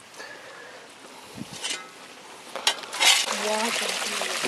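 Shallow creek water trickling faintly, with a few small knocks. About three seconds in, a louder, steady rush of flowing stream water comes in, with a brief voice.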